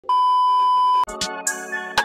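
A steady electronic beep at one pitch for about a second, cutting off sharply, then background music with held chords and short, crisp percussion hits.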